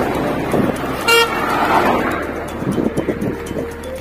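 A vehicle horn toots once, briefly, about a second in, over steady road and wind noise.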